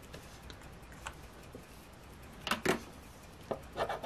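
A few light clicks and taps on a wooden tabletop, with two sharper clicks about two-thirds of the way through. Near the end a black plastic scratcher tool starts scraping the latex coating off a scratch-off lottery ticket in quick, rapid strokes.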